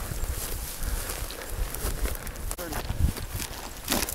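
Footsteps pushing through dry sagebrush and grass, with irregular rustling and crunching, over a low rumble of wind buffeting the microphone.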